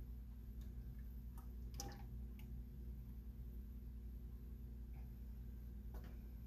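Faint, scattered ticks and taps of a stir stick scraping thick liquid glaze out of a plastic tub as it is poured into a graduated cylinder, the clearest about two seconds in, over a steady low hum.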